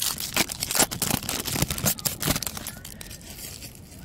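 Crimped foil wrapper of a Topps baseball card pack being torn open and crinkled by hand, a dense run of crackles that thins out over the last second or so as the cards are pulled free.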